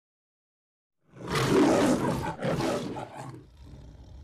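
The Metro-Goldwyn-Mayer logo's lion roar: two roars beginning about a second in, the first longer and louder, the second shorter and trailing off.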